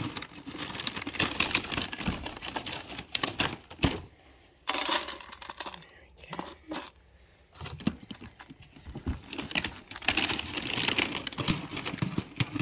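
A plastic pet-food packet crinkling and dry cat kibble clattering into a stainless steel bowl, heard as many scattered clicks with a louder rush about five seconds in.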